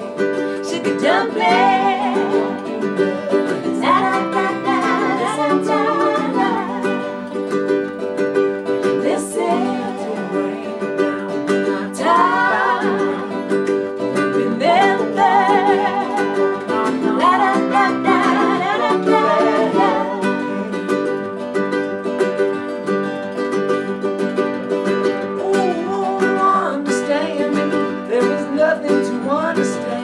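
Live acoustic folk song: strummed acoustic guitar and plucked strings holding steady chords under a sung vocal melody that comes in phrases.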